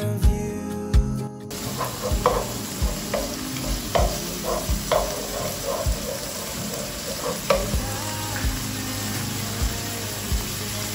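Background guitar music cuts off about a second and a half in. Chopped tomatoes then sizzle in a frying pan with onion and garlic, with a run of short knocks and scrapes, about two a second, as they are stirred with a wooden spatula, thinning out towards the end.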